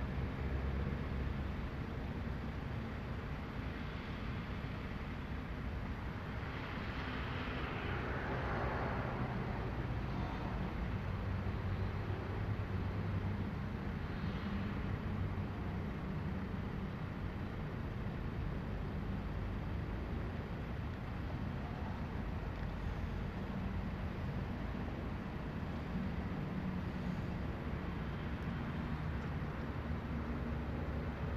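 Steady low rumble of road traffic and vehicle engines, with a louder swell about seven to nine seconds in, like a vehicle passing.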